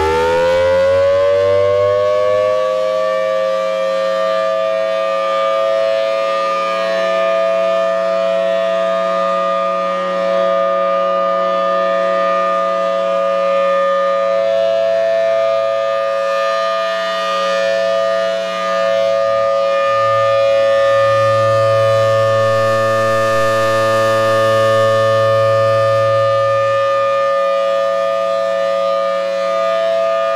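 Federal Signal Thunderbolt 1003 outdoor warning siren with a 4M blower, finishing its wind-up with a pitch rising for the first couple of seconds, then holding a steady full-alert tone. The tone swells and fades slightly as the rotating horn sweeps around, and it is loud enough to max out the microphone.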